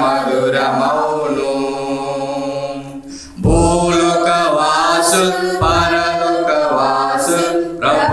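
A mixed group of men and women singing a Telugu Christian hymn together a cappella, in long held notes. The singing breaks off briefly about three seconds in, then comes back louder.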